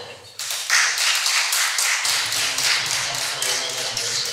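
An audience clapping: a dense run of claps that starts about half a second in and keeps on.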